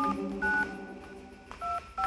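Telephone keypad touch-tones: three short two-note dial beeps, the first two about half a second apart and the third after a gap of about a second, as the backing music thins out beneath them.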